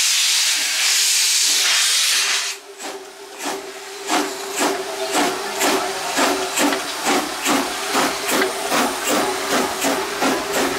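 1940 ČKD 0-4-0T narrow-gauge steam tank locomotive venting steam with a loud, steady hiss that cuts off about two and a half seconds in. The engine then gets under way, its exhaust chuffing in a regular beat of about two a second, with a steady high tone running underneath.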